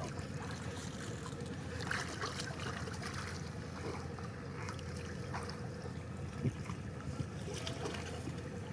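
Water splashing and trickling as a wet fishing net is hauled in over the side of a wooden boat, with small scattered clicks over a steady low rumble. There are a couple of sharp knocks in the second half.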